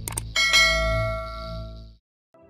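Two quick clicks, then a bright bell ding that rings on and fades away over about a second and a half: the click-and-chime sound effect of a notification-bell button being pressed.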